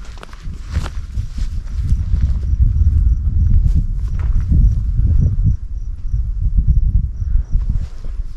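Wind buffeting the microphone, a heavy uneven rumble, with footsteps on a dirt trail in the first couple of seconds. From about two and a half seconds in, a faint high insect chirp repeats about twice a second.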